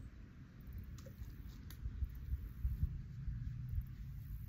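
Low, uneven rumble of wind on the microphone, with a couple of faint clicks about a second and a half apart.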